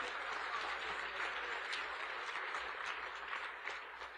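Audience applauding: a steady spread of clapping that tails off near the end.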